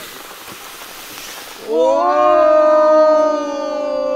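Hot stones hissing and sizzling in a pot of liquid for a Mongolian hot stone grill. Just under two seconds in, a long held note with many overtones, falling slightly in pitch, comes in over it and becomes the loudest sound.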